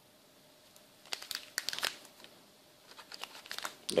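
Crinkling of a plastic anti-static bag being handled and opened by hand, in two short spells of rustling: one about a second in and another near the end.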